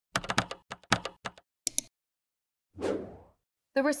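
Computer keyboard typing: a quick run of about a dozen key clicks over the first two seconds. About three seconds in, a single short falling whoosh follows.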